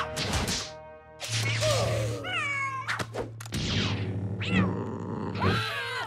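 Cartoon soundtrack: music and comic sound effects with sharp hits, a steady low hum from about a second in, and a few sliding wordless vocal yelps from the characters.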